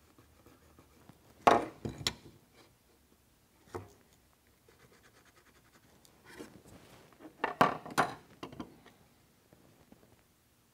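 Ballpoint pen scratching marking lines onto a purpleheart wood block along a steel rule, in short strokes. A few louder scrapes and knocks come from the rule and tools being shifted on the wood, the loudest about a second and a half in and again near eight seconds.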